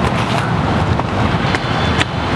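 Steady outdoor rumble of wind on the microphone and traffic, with a few faint clicks scattered through it.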